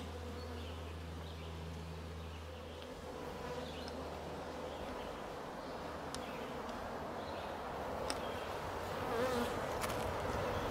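Honeybees buzzing around an opened hive, a steady hum that grows a little louder toward the end.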